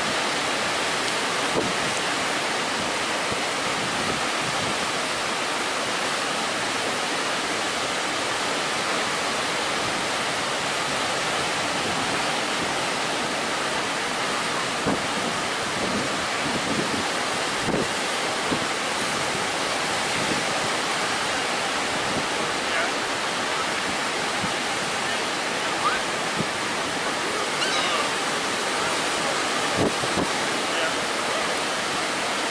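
Atlantic Ocean surf breaking and washing on a sandy beach: a steady, even rush of waves.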